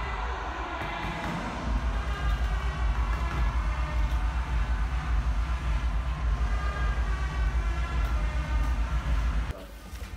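Deep, muffled rumble that throbs a few times a second and stops abruptly near the end.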